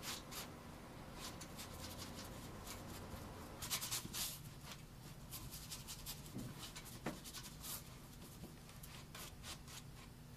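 Paintbrush strokes on canvas: soft, irregular brushing and dabbing, with a louder cluster of strokes about four seconds in.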